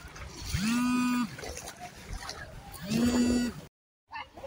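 Two drawn-out calls from a voice, each under a second and held on one steady pitch, about two seconds apart, over a faint background hiss; the sound cuts off suddenly just before the end.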